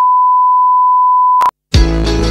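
A single long electronic beep, one steady pure tone like a censor bleep, cutting off abruptly about a second and a half in. Near the end a loud burst of intro music begins.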